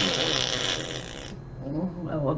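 A sudden burst of breathy laughter, lasting just over a second, then quieter voiced laughter near the end.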